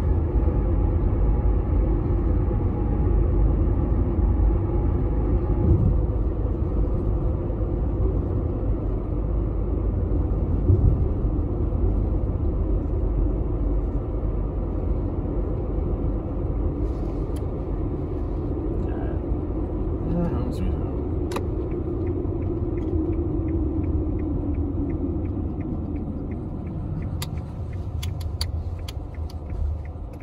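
Road noise inside a moving car's cabin: a steady low rumble of engine and tyres, with a run of quick light ticks near the end.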